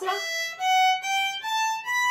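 A violin bowed, playing about five notes that climb step by step, each held about half a second. This is the G major finger pattern on the E string: open string, then fingers one to four, with the first and second fingers placed close together.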